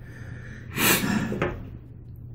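A man breathing out hard: one short, noisy puff of breath about a second in, followed by a brief smaller one, as he suffers the lingering burn of ghost pepper salsa.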